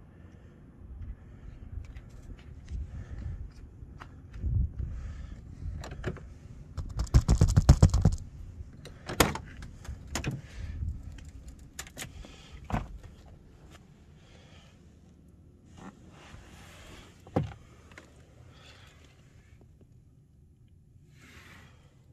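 Handling noises in and around a pickup truck's cab: scattered clicks, knocks and rustling, with a quick run of rattling clicks about seven seconds in as the loudest sound.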